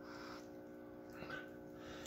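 Quiet room tone with a faint steady hum, and a soft brief sound a little past a second in.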